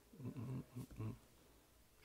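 A man's low, muttered voice: a few short, wordless sounds under his breath in the first second, then quiet room noise.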